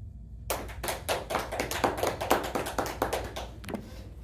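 A small audience applauding: a burst of clapping that starts about half a second in and dies away near the end.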